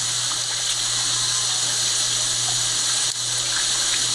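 Steady rushing hiss with a low hum beneath it, even throughout, with no clear events.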